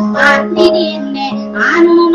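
Dayunday music: a high voice singing over a steady, held low accompanying tone.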